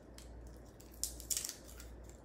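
Garlic cloves being peeled by hand: the papery skins crackle and tear, with a few short, crisp crackles in the second half.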